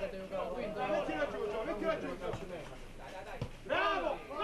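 Several voices talking and calling out over one another, with no single clear speaker.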